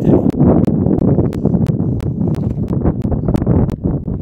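Wind rumbling on the camera microphone, with an even run of sharp ticks about three times a second over it.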